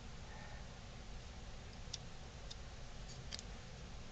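Faint room hum with a few light clicks in the second half, from small objects being handled as wood filler is worked onto a carved wooden piece.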